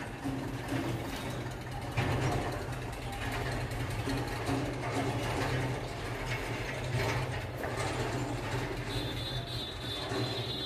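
Marker pen scratching on a whiteboard in short strokes as a sentence is written, over a steady low hum, with a thin high squeak near the end.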